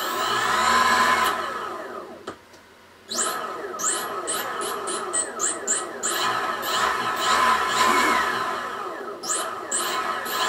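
A brushless electric motor driven by an open-source VESC speed controller, whining as it speeds up and slows under throttle. It spins up at the start, eases off briefly, then gives a run of short quick revs before longer rises and falls in pitch.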